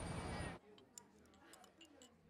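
Busy city street ambience, a steady wash of traffic and crowd noise, cuts off suddenly about half a second in. A quiet room follows, with a few faint clicks of chopsticks and tableware.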